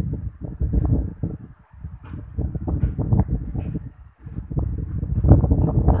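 Wind buffeting on the microphone from a fan's draught: an irregular low rumble that eases off briefly twice.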